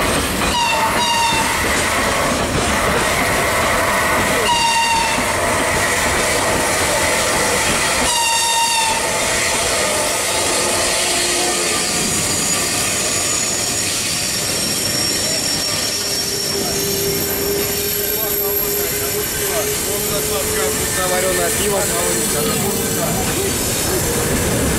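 Freight train of open wagons rolling past close by: a steady, loud rumble and clatter of wheels on rails. Three short high-pitched tones sound within the first nine seconds. Later the noise continues more evenly, with a faint steady tone rising slightly near the end.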